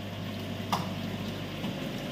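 Steady low hum with a faint watery hiss from aquarium pumps and filtration running, and one short click a little under a second in.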